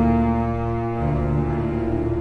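Orchestral score music: low strings holding a dark, sustained chord, with the bass notes shifting about a second in.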